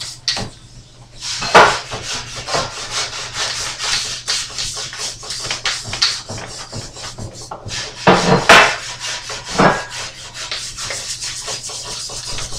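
Stiff hand scrub brush rasping against a rusty cast-iron claw foot and tub, in quick, uneven back-and-forth strokes that knock off loose rust and flaking paint. A few strokes are louder, about a second and a half in and around eight to ten seconds in.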